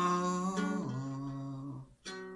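A man's voice holding a long wordless note at the end of a sung phrase, stepping down to a lower held note about a second in, then stopping just before the end.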